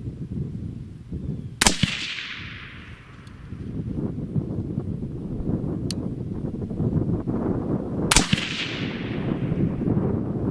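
Two suppressed shots from an AR-15 in .223 Wylde fitted with a Liberty Infiniti X suppressor, about six and a half seconds apart. Each is a sharp crack followed by a fading echo.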